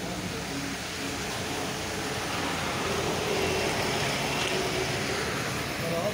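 Steady road and engine noise heard from inside a moving vehicle, growing slightly louder in the middle.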